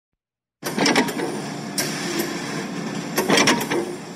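Mechanical clatter over a steady hiss, with irregular louder knocks, starting about half a second in.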